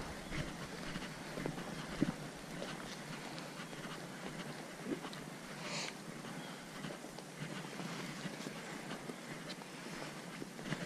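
Faint outdoor ambience with a few scattered light crunches and clicks, like footsteps on a path covered in dry leaves.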